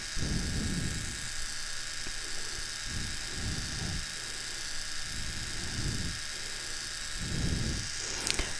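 Small battery-powered grooming device buzzing steadily close to the microphone, used as a facial-hair trimmer, with soft low swells about once a second.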